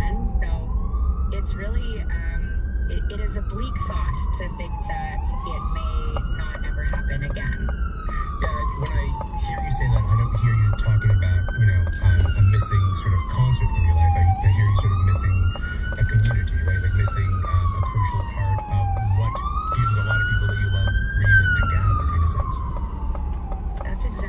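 Ambulance siren in a slow wail, its pitch rising and falling about every four and a half seconds and growing louder about ten seconds in as the ambulance comes alongside. Traffic and road noise run underneath.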